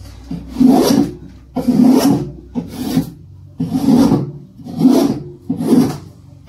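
A spoke shave cutting along the corner of a piece of oak, about six scraping strokes roughly one a second, each taking a thin, wispy shaving as the edge is rounded over.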